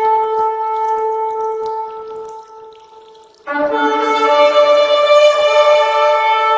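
Shofar (ram's horn) blasts. A long steady note fades away about two and a half seconds in. After a short lull, another blast starts abruptly about three and a half seconds in, at first with more than one pitch sounding together, then settling into a single steady note.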